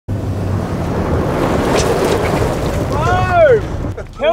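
IVECO Daily 4x4 truck's diesel engine and tyres running fast on a gravel track under a steady rush of wind noise. Near the end a person lets out a loud whoop that rises and falls in pitch.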